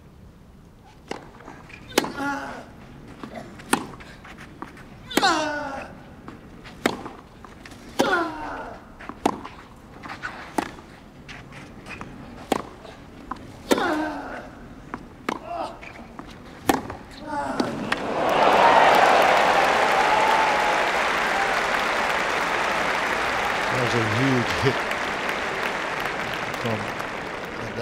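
Clay-court tennis rally: a long series of racket strikes on the ball, about one every second or so, several with a player's grunt. The point ends and a crowd bursts into loud applause and cheering about eighteen seconds in, which carries on.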